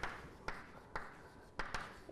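Chalk writing on a chalkboard: a handful of short chalk strokes and taps, roughly half a second apart.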